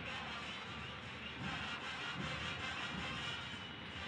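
Steady stadium crowd noise from the football match broadcast: a continuous wash of fans singing and chanting in the stands.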